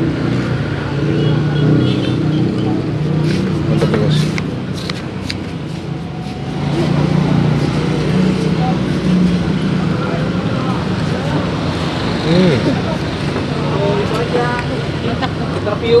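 Voices talking in the background over street traffic noise, with a few light clicks about three to five seconds in.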